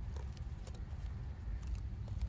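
A few faint clicks and rustles of a tomato side shoot being snipped with pruning clippers and handled, over a steady low rumble.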